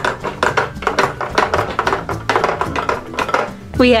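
A toy mallet pounding the pegs of a pound-a-peg bench: rapid repeated knocks, several a second, with faint background music.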